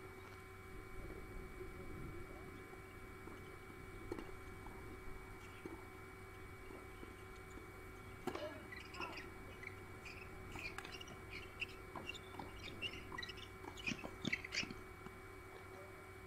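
Faint birds chirping, starting about halfway through and growing busier near the end, over a steady background hum.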